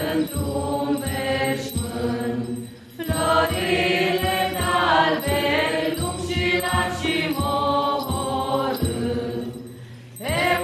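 A small group of women singing an Orthodox church chant without accompaniment, with a short break between phrases about three seconds in.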